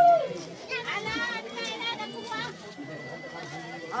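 Women ululating at a wedding, the Odia hulahuli: quick wavering high cries over a background of voices and chatter. A loud long held note ends with a falling pitch at the very start.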